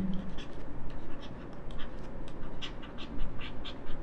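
Stylus writing on a tablet: a run of short, irregular scratches and taps of the pen tip as words are written out by hand.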